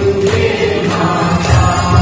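Devotional aarti hymn sung by several voices with musical accompaniment, holding long sustained notes. A few sharp strikes sound through it.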